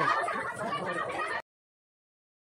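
A crowd of women ululating with a warbling, trilling cry over crowd chatter; the sound cuts off suddenly about one and a half seconds in.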